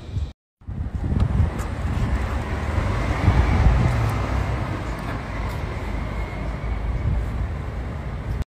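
Rolls-Royce Cullinan SUV driving off, its low running sound mixed with wind buffeting the phone's microphone.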